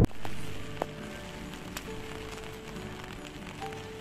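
Rain falling on an umbrella, a steady hiss with a few sharp ticks in the first two seconds, under soft background music.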